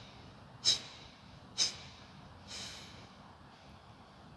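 Kapalbhati breathing: two sharp, forceful exhalations through the nose about a second apart, then a softer, longer breath out about two and a half seconds in.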